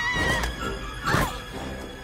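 A woman screaming in high cries over tense horror film score music: one held cry breaks off about half a second in, and a second cry falls in pitch just after a second in.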